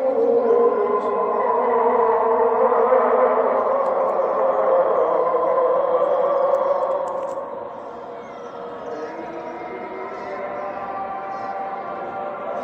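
A voice chanting in long held, slowly bending notes, loud at first and dropping off about seven seconds in, then going on more softly.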